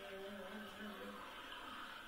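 A voice singing a slow sung line with held notes, played through a television's speaker.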